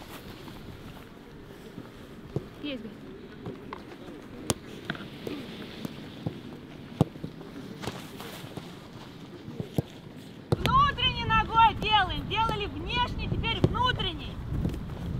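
Footballs being kicked in a training drill: occasional sharp single thuds over open-air ambience with faint distant voices. About ten and a half seconds in, wind starts buffeting the microphone and a high voice calls out loudly again and again.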